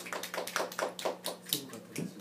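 Hand claps in a quick, even rhythm of about five a second, growing fainter and stopping near the end.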